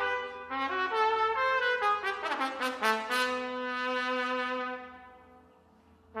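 Trumpet playing a phrase of separate notes, breaking into a quick flurry of notes a little past two seconds in, then settling on a held note that fades away by about five seconds.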